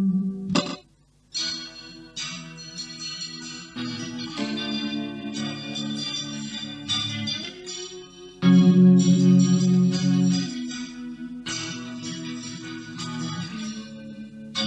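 Electric guitar, a Harley Benton JA-60 offset fitted with a Jazzmaster tremolo, strummed as sustained ringing chords. The sound stops briefly about a second in, a few notes slide in pitch from the tremolo arm, and the chord about two-thirds of the way through is louder.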